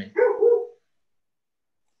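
A dog barking briefly, picked up over a Zoom video call.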